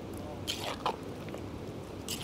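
A spoon stirring a pot of beans in sauce in a dutch oven: soft wet stirring with a couple of short scrapes, about half a second and just under a second in.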